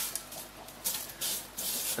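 Aquarium gravel being spread by hand over the glass bottom of an empty tank: several short scraping strokes of pebbles shifting and rubbing against each other and the glass.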